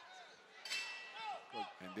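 Boxing ring bell struck to end the round, ringing briefly with a few clear tones about two-thirds of a second in, over a murmuring arena crowd.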